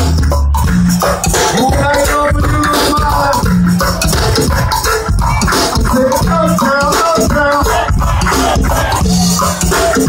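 Live go-go band playing loud: a continuous percussion groove over a repeating bass line, with a melodic line above.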